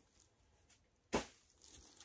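Bubble wrap being handled and unfolded: mostly quiet, with one short sharp crinkle a little over a second in and faint rustling near the end.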